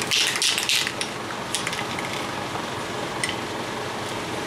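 Steady rushing noise of a shop fan blowing, with a few brief rustling bursts in the first second and a couple of faint ticks later.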